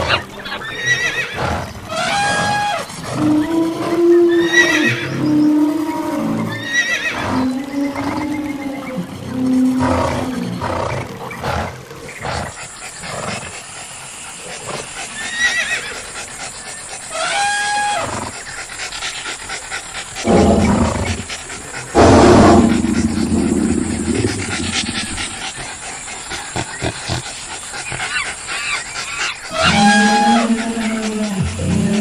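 Dubbed animal sound effects: a string of loud pitched calls, horse whinnies among them, repeating every second or two, then a rough, loud roar about twenty seconds in.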